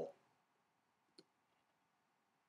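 Near silence with a single faint, short click about a second in.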